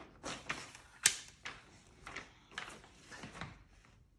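Pages of a picture book being handled and turned: several short paper rustles, with a sharp click about a second in.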